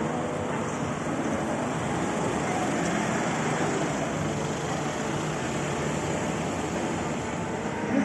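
Busy city street ambience: steady traffic noise from passing vehicles mixed with the murmur of passers-by's voices.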